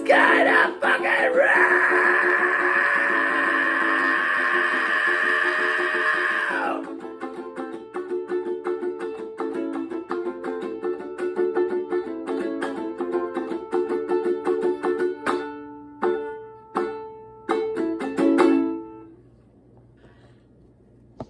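Ukulele strummed hard and fast, with a long held shouted vocal note over it for the first six or seven seconds. The strumming then goes on alone, thins to a few separate strums, and stops about a second before the end.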